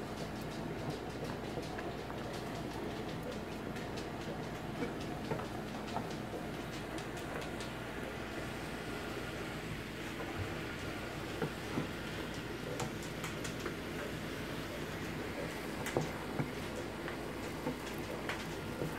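Watermelon juice boiling hard in a pan, thick and bubbly: a steady bubbling hiss with scattered small pops and clicks, and a few louder ticks as a spatula stirs it.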